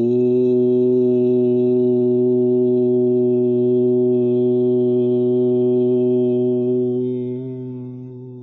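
A man chanting one long, steady "Om" on a single low note, fading away over the last second or so.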